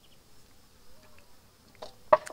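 Faint outdoor ambience: a rapid, evenly spaced chirping trill stops just after the start, leaving near-quiet air with a few faint chirps.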